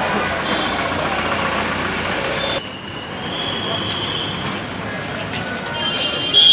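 A Force Traveller ambulance van's engine running as it moves slowly through a crowd, with crowd voices around it. The sound changes abruptly about two and a half seconds in. After the change a steady high tone lasts for a second or so.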